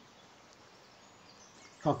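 Quiet outdoor ambience, a faint even hiss, with a few faint high chirps shortly before a man's voice comes in near the end.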